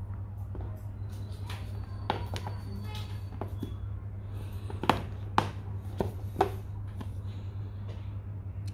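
Cardboard phone retail boxes being handled and turned over: a scattering of light taps and knocks of card against card and fingers on the boxes, over a steady low hum.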